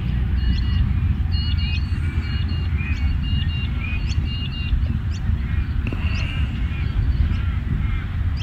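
Wind rumbling on the microphone, with small birds chirping repeatedly in the background.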